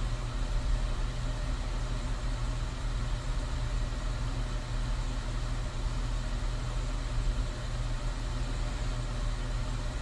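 A steady low rumbling hum of ambient background noise, even and unchanging throughout.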